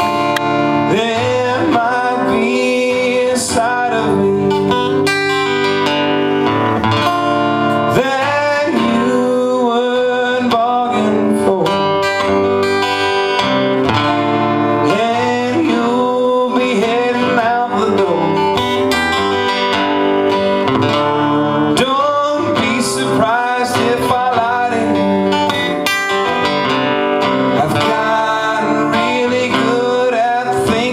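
Live song: two acoustic guitars strummed together, with a man singing the melody over them.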